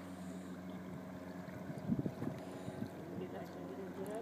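An engine droning steadily at an even pitch, fairly quiet.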